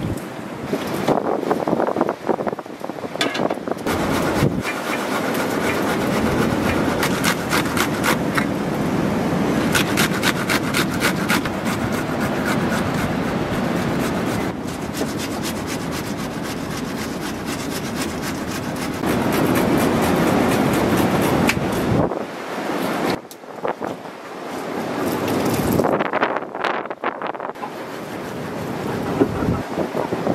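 Food being grated by hand on a metal box grater: a long run of quick, rasping strokes.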